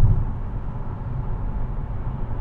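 Car cabin road noise at highway speed: a steady low rumble of tyres on concrete pavement, with a short thump at the very start.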